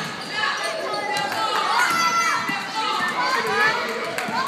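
A basketball bouncing on a gym floor, several sharp knocks, amid several people's overlapping voices.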